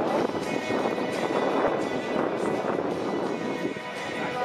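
Music playing over a football stadium's loudspeakers, mixed with a steady babble of spectators' voices in the stands.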